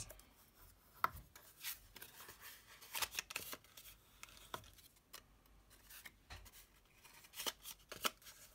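Scored cardstock being folded and burnished with a bone folder: faint, scattered short scrapes of the folder rubbing along the creases, with a few light taps.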